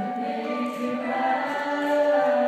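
Large mixed choir singing sustained, held chords, the sound swelling louder about a second in.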